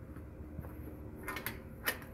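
A few soft footsteps crunching on a gravel path, about a second and a half in and again near the end, over a faint steady hum.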